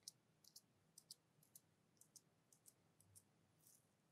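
Faint, sticky clicks of cream pressed and pulled apart between fingertips close to the microphone, irregular at about three or four a second. A brief soft rustle comes near the end.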